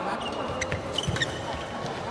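Live sound of a doubles badminton rally in a sports hall: a handful of sharp knocks and a few short, high squeaks over the hall's steady background noise.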